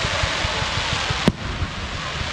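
Fireworks display: a continuous dense hiss with low thumping throughout, and one sharp, loud report a little over a second in.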